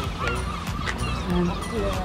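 Gulls calling: a few short cries.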